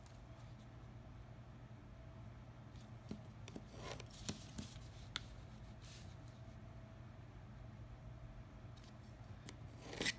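Bone folder scoring fold lines into a sheet of paper: faint scraping and rubbing, with a few light clicks and taps in the middle.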